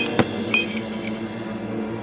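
Animatic soundtrack: held musical notes with a sharp click just after the start and short, high, glassy clinks near the start and about half a second in.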